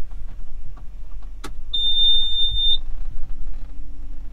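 A click, then a single steady high-pitched beep lasting about a second from a Bobcat E35i mini excavator's instrument panel, the kind of warning beep the panel gives as the key is switched on and the display powers up. Small handling clicks and a low rumble sit underneath.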